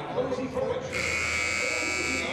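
Basketball scoreboard horn sounding one steady, buzzing blast about a second in, over voices in the gym, during the break before the second quarter.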